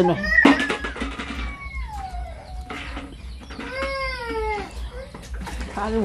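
A cat meowing twice: a long falling call, then a drawn-out call that arches and falls away.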